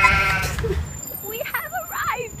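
A young woman's short, high-pitched, wavering vocal sound, bleat-like in its quaver, in the first half second. After about a second it gives way to quieter voices over city street noise.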